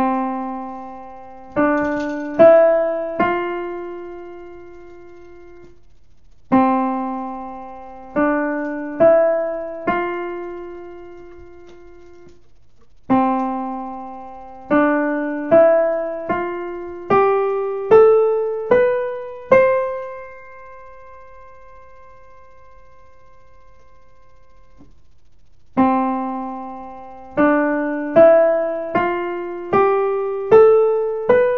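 Piano scale drill played with the right hand, one note at a time, rising step by step from middle C. Twice it plays four notes (C–D–E–F), the first longer and the last held. Then it plays a full eight-note C major scale up to the C an octave higher and holds it, and the drill starts again near the end.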